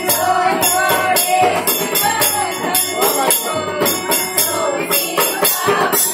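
Group singing a Hindi devotional bhajan, accompanied by harmonium and dholak, with jingling hand percussion keeping a steady beat.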